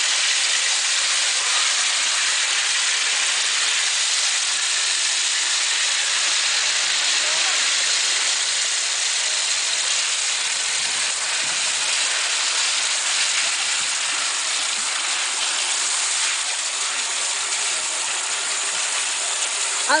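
Steady gush of water pouring from a concrete channel outlet onto a wooden screen tray, carrying wet coffee beans with it.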